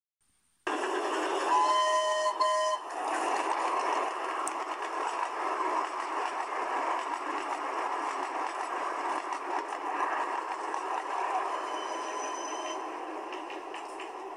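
A steam locomotive sounds a short double blast on its whistle about two seconds in, then runs on with a continuous noisy rush and rattle that fades a little near the end.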